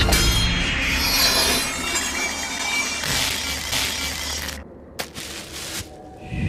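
Cartoon sound effects over music: a sudden shattering crash at the start that rings down over about a second, then a few more hits and a sharp click near the end.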